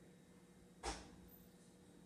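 Near silence: a faint steady hum, broken by one sharp click a little under a second in.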